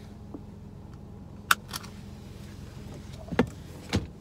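Steady low hum inside a car with its engine running, broken by a few sharp clicks and taps from handling things in the cabin, the loudest about a second and a half in and two more near the end.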